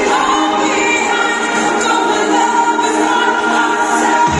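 Live pop concert music over a stadium sound system, heard from the crowd: held, choir-like layered vocals and chords with no bass underneath.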